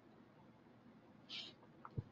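Near silence: room tone with a faint short hiss just past halfway, then a couple of faint computer keyboard clicks near the end as a number is typed.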